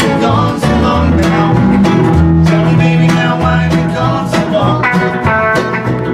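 A small band of acoustic guitar, electric guitar and upright double bass playing live. The bass plays a moving line, its notes changing about every half second under plucked guitar chords.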